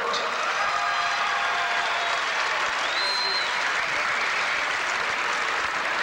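Arena crowd applauding steadily between name announcements, with faint voices and a brief high tone about halfway through.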